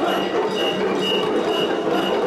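Mikoshi (portable shrine) procession: a dense, loud din of the carrying crowd, with a short high tone repeating about twice a second.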